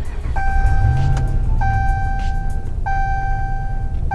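2014 Ram 1500 instrument-cluster warning chime sounding as the dash boots up: a clear single tone repeating about every 1.25 s, each held about a second. A low rumble runs underneath.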